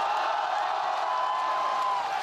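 A large crowd cheering and shouting, a loud, steady mass of many voices that swells in just before and dies away just after.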